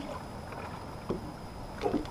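Low, steady background noise aboard a small open fishing boat on calm water, with a short, faint voice-like sound just before the end.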